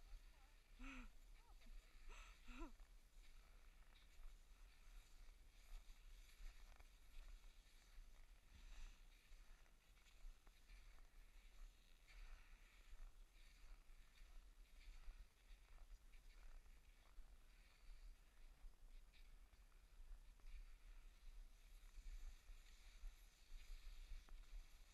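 Near silence, broken by faint, repeated crunches and swishes of cross-country skis and poles on a groomed snow trail. A brief gasp is heard about a second in.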